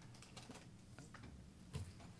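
Near silence: quiet room tone with a few faint, scattered small clicks and rustles, like light handling of papers or keys.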